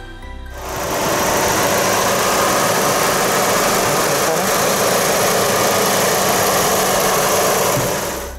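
Chevrolet Aveo's E-TEC II 16-valve four-cylinder engine running steadily, recorded close in the open engine bay. It cuts in loud about half a second in and stops at the end.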